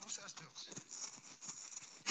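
Faint, low muttered speech from a man's voice close to the phone's microphone.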